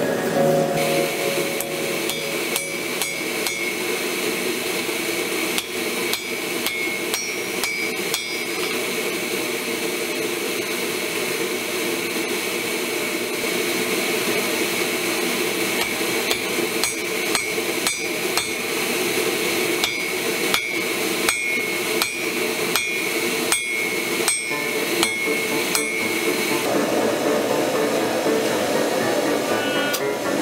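Hand hammer striking a red-hot damascus steel billet on an anvil: many sharp, ringing blows in irregular runs, stopping a few seconds before the end.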